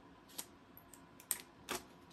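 Butcher paper and heat-resistant tape being peeled off a freshly sublimated ceramic latte mug, giving three short crackles.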